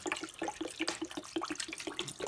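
91% rubbing alcohol pouring from a plastic jug into a glass baking dish, splashing over dried starfish. The jug glugs in a quick, even gurgle of about seven pulses a second.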